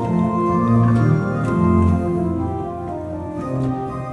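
1872 Holdich pipe organ, tuned in an unequal temperament, playing a classical-style air with variations, with sustained chords under a moving melody line. It is a little louder a second or two in, then settles softer.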